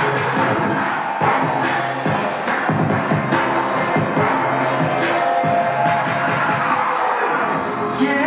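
Music with a steady beat, a dance track without singing in this stretch.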